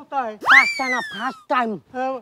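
A cartoon-style 'boing' comedy sound effect: one pitched glide that rises sharply about half a second in, then sinks slowly for about a second, over a man's speech.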